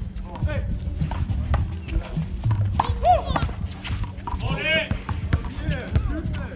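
A doubles handball rally: the small rubber handball is struck repeatedly by gloved hands and bounces off the concrete wall and court in a run of sharp knocks, with sneakers scuffing on the concrete. Voices and music are heard alongside.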